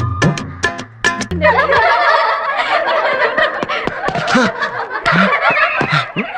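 A film song with drum beats breaks off about a second in, and a group of people bursts into laughter together, many voices cackling at once.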